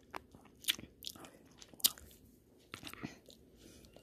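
A person chewing a mouthful of stir-fried rice noodles with shrimp and vegetables close to the microphone: irregular short, wet mouth clicks and smacks, the loudest just under two seconds in.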